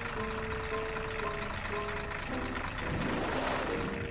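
Cartoon background music, a light melody of held notes, over a steady rushing hiss.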